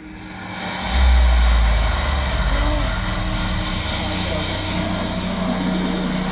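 Ambient soundscape of an immersive art installation: a deep rumble swells in about a second in over a steady airy wash, with a few faint gliding tones.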